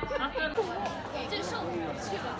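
Indistinct chatter of several people talking. A steady low hum under it cuts off about half a second in.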